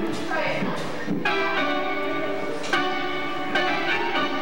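Live band playing held chords with sharp accented hits every second or so. A voice is briefly heard over the music near the start.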